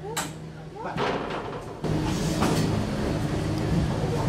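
Amusement ride's drive starting up about two seconds in, a steady low mechanical hum, with voices over it.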